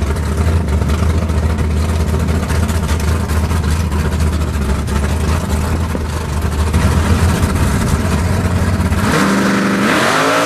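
Drag car's engine running with a loud, low rumble after its burnout, then revving up with a rising pitch near the end as the car pulls away from the line.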